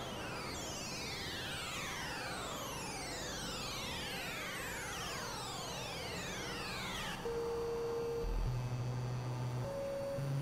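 Experimental synthesizer music: many overlapping tones sweeping downward in pitch, each glide lasting a few seconds. About seven seconds in the sweeps cut off abruptly, giving way to plain held tones that each last about a second and jump between a higher and a lower pitch.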